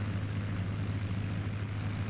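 P-51 Mustang piston engines running steadily at low power as the fighters warm up and taxi, a constant low drone.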